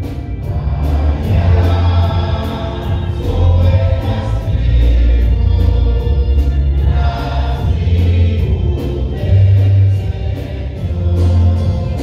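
Choral religious music: a choir singing a hymn over a deep bass line and a steady beat.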